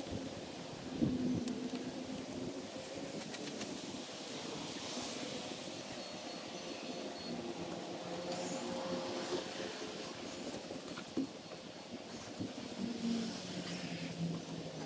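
Outdoor ambience with a faint, steady hum of distant engines, its pitch wavering slightly, and a few light clicks.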